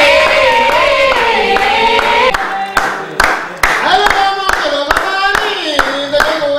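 Women's voices singing a Garifuna folk song together, with hand clapping keeping a steady beat of about two claps a second. The singing breaks off briefly about halfway and comes back with a new phrase.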